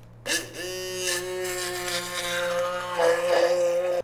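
Handheld immersion blender running down inside a hollowed watermelon, churning the flesh into juice rather than scooping it out. Its motor whine comes up to speed about half a second in, holds a steady pitch, turns rougher near the end and cuts off suddenly.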